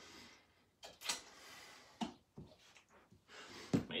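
A man breathing hard while recovering between exercise intervals: short puffs of breath, with a small click about two seconds in and a low thud near the end.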